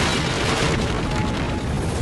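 A cartoon's crash-and-rush sound effect, a loud noisy burst that fades away over the first second and a half, laid over a dramatic background score.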